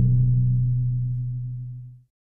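Closing note of a news outro jingle: a single low, steady synth tone that slowly fades, then cuts off suddenly at the very end.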